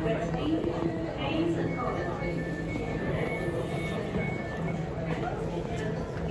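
Standing Central Line tube train with its doors open: a steady low hum and indistinct voices, with a run of short high electronic beeps starting about two seconds in and lasting about two seconds.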